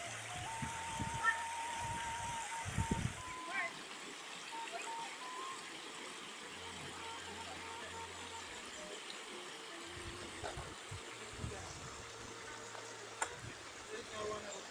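Shallow river water rushing over rocks and small rapids, with background music underneath.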